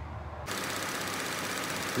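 3.6L V6 direct-injection engine of a 2015 Buick LaCrosse idling steadily from about half a second in, with a fast, even ticking over the running. It is running with a newly replaced exhaust camshaft VVT solenoid and the P0014 code cleared.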